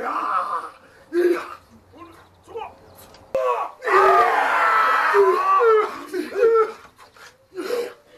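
Men's voices shouting and chanting in short bursts, with one long loud shouted passage from about three and a half to six seconds in: the calls of Māori warriors performing with taiaha staffs. A sharp click comes just before the long shout.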